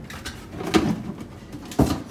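Short, low voice sounds from a person, and a sharp knock near the end.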